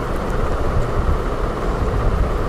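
Steady low rumbling background noise, even and without clear strokes or tones.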